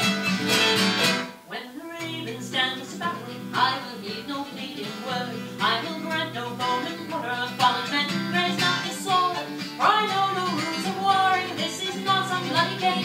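Acoustic guitar strumming with a violin playing over it in an instrumental break of a live folk song. A full, loud passage breaks off about a second in, and the guitar strums continue as the violin plays on, building again near the end.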